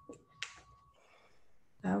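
A short, sharp click about half a second in, after a smaller one just before it, over an otherwise quiet line with a faint steady high tone; a voice starts near the end.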